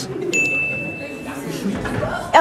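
A thin, steady high-pitched tone, held for about a second, over the murmur of people talking in a room.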